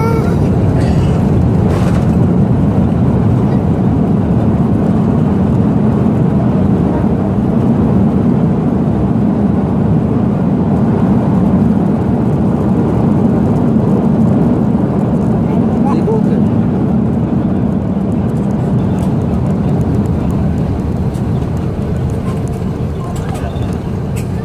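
Cabin noise of a Boeing 747 on its landing rollout, spoilers raised: loud, steady engine and runway rumble that eases a little near the end as the jet slows.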